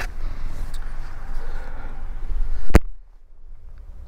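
Rustling and body movement as a person climbs up into the back seat of a 2022 Toyota Tundra double cab. Then a single loud thud of the rear door shutting, after which the outside background noise drops away.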